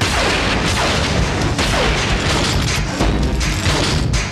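Cartoon battle sound effects over action music: a loud blast that begins abruptly, then continuous dense crashing noise with a couple of falling whines.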